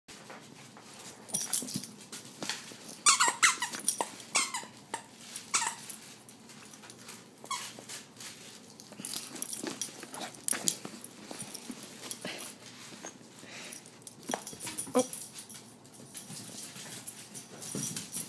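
A dog's squeaky toy squeaking in quick runs as a chihuahua bites and plays with it, loudest about three to five seconds in, with scattered clicks and knocks.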